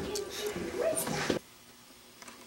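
A teenage boy's voice making wordless vocal sounds, rising in pitch near the end and cut off abruptly about one and a half seconds in, leaving faint room tone.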